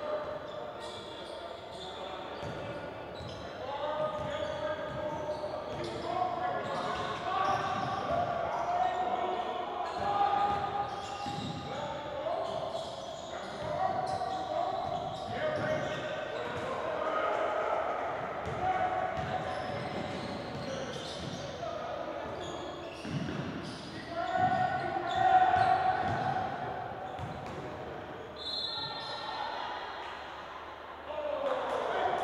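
Basketball game sounds in a large, echoing gym: a ball bouncing on the hardwood floor amid indistinct voices of players and spectators calling out.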